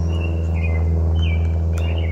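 Small birds chirping several times over a steady low hum, with one sharp click near the end.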